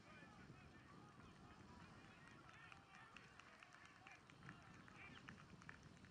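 Faint outdoor ambience: distant voices with many short bird chirps and ticks, busier in the second half.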